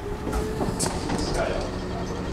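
1907 Otis winding-drum elevator car running in its shaft, a steady mechanical rumble with rattling.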